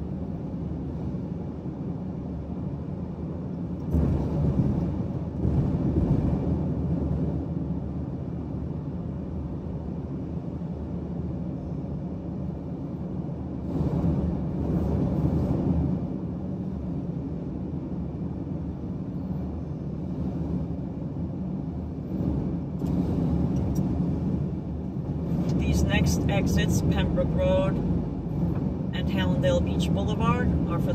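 Road and tyre noise from a car at highway speed, heard inside the cabin: a steady low rumble that swells a few times. A brief voice-like sound comes in near the end.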